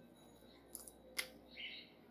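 A couple of faint clicks as a marker pen is handled, then a short squeak of a marker drawing on a whiteboard near the end.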